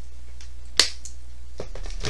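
A single short, sharp click about a second in, over a steady low hum.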